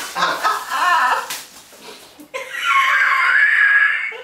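A woman's high-pitched laughter: short breathy bursts in the first second, then a long squealing laugh from about halfway through.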